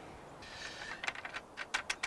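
A brief rustle, then a run of light, irregular clicks as fingers take hold of and work the folding plastic center-column crank handle of a Magnus VT-350 video tripod.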